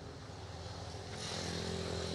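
An engine running with a steady low hum, growing louder a little after a second in.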